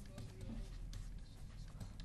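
Faint scratching of a stylus writing on the glass of an interactive touchscreen display, over a low steady hum.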